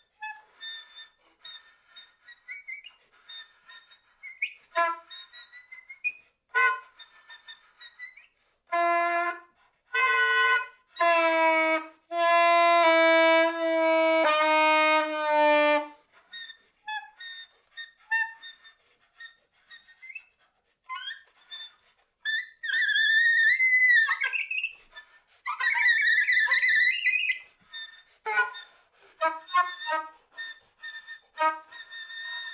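Solo soprano saxophone: scattered short pops, breathy sounds and brief notes, then a run of long held notes in the middle, and later high, wavering squealing tones before it thins out again to sparse short sounds.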